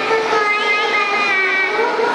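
A child's voice amplified through a hand-held microphone and the hall's loudspeakers, with drawn-out pitched sounds, over a background of audience chatter.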